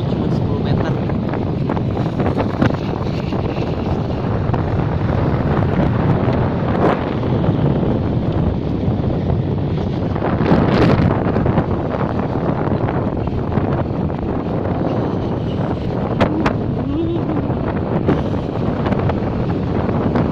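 Wind rushing and buffeting over the microphone of a phone carried on a moving motorcycle, a loud steady noise with a few brief gusts.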